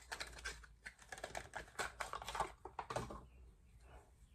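Faint, irregular clicks and taps of small objects being handled, as makeup items are picked through on a table; they thin out after about three seconds.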